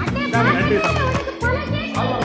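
Background music with a steady beat under several people's voices chattering and calling out over one another, with no clear words.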